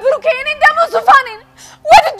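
Only speech: a high-pitched voice talking, breaking off about one and a half seconds in, with speech starting again just before the end.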